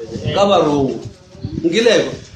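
A man preaching in two drawn-out phrases, his pitch rising and falling; the second phrase slides down in pitch near the end.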